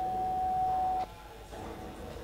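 A single steady, pure high tone held without wavering, which cuts off suddenly about a second in, leaving only faint room noise.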